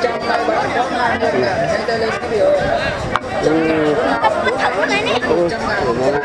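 Crowd chatter: many voices talking at once close by, a steady babble with no single speaker standing out.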